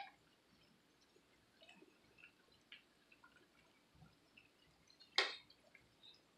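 Onion bhajis frying in hot oil in a pan: sparse, quiet crackles and pops of spitting oil. A sharp click at the start as metal tongs touch the pan, and one louder, sharp pop or clack about five seconds in.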